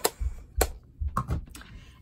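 Stamping supplies being handled and set down on a hard tabletop: two sharp knocks about half a second apart, then a few quieter taps and handling.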